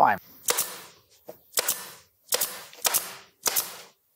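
Pneumatic staple gun firing staples through aluminium flywire into a wooden board. There are about five sharp shots, roughly half a second to a second apart.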